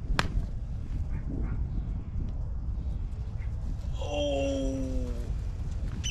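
A golf club striking the ball on a low punched chip shot: one sharp click just after the start, over a steady low background rumble. About four seconds in, a drawn-out pitched sound of unclear source lasts just over a second, falling slightly in pitch.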